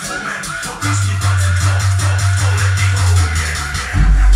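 Electronic music played loud through a 250 W RMS dual-voice-coil subwoofer in a homemade slot-ported box, with a deep sustained bass note coming in about a second in.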